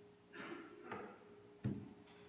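A plastic rolling pin and hands working a sheet of dough on a worktable: two soft rustling scrapes, then a sharp thump against the table near the end, over a steady hum.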